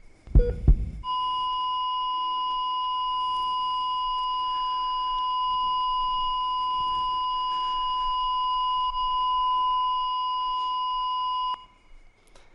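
Heart monitor sound effect: a low thump with a short beep about half a second in, then the continuous flatline tone, steady and unbroken for about ten seconds before it cuts off. The flatline is the sign of a heartbeat stopping, which the preacher calls eerie.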